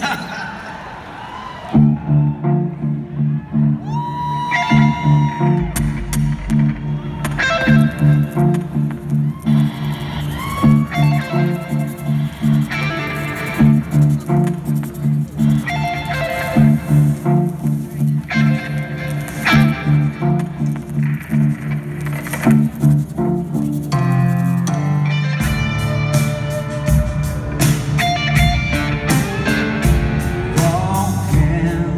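Live band playing a song intro through an arena PA: a repeating electric guitar riff starting about two seconds in, with the drums coming in fully near the end.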